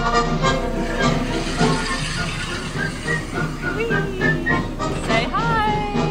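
Upbeat music with a steady beat and voices singing, the show music of the Seven Dwarfs Mine Train's mine scene; from about five seconds in, a few high voices swoop up and down.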